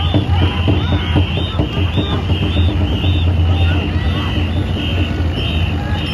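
Crowd of spectators shouting and cheering over a ngo boat race, with a rhythmic high whistle-like pulse about twice a second of the kind that sets the paddlers' stroke. A steady low hum runs underneath.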